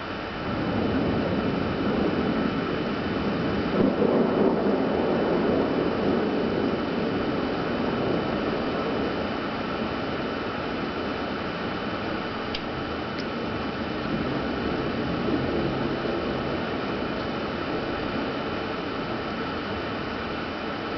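Long rolling rumble of thunder from a nearby thunderstorm, swelling about half a second in, loudest around four seconds, then slowly dying away over a steady hiss.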